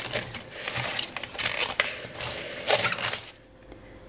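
A fork tossing chopped cabbage and shredded raw beet in a glass bowl: a crackly rustle of the wet vegetables with short clinks of the metal tines against the glass, stopping about three seconds in.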